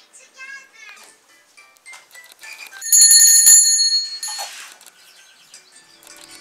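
A small brass puja hand bell rung for about a second, a bright high metallic ringing with a few strikes of the clapper, loud against faint background sounds.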